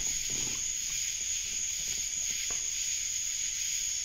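Steady high-pitched whine over a hiss, with a faint tick about two and a half seconds in.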